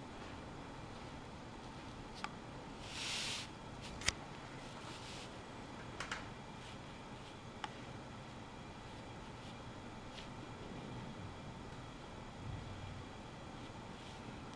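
Faint handling sounds of brush calligraphy on hanshi paper: a brief rustle about three seconds in and a few light taps, over quiet room tone.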